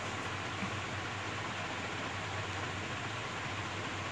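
Steady, even hiss of background noise with a faint low hum underneath.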